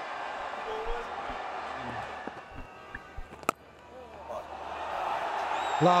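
Stadium crowd noise, then a single sharp crack of a cricket bat striking the ball about three and a half seconds in. The crowd noise swells afterwards as the shot runs away for four.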